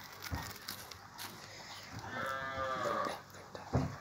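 A cow mooing once, a long call of about a second a little past the middle. A sharp knock near the end.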